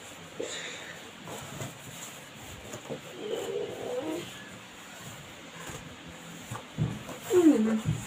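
A person's voice making a loud, falling hummed 'mmm' about seven seconds in, after quieter murmurs in the middle, with a few soft knocks from a cardboard box being handled.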